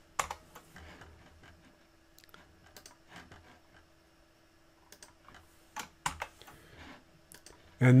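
Computer keyboard and mouse clicking: scattered single keystrokes and clicks, most of them about a second apart, over a faint steady hum.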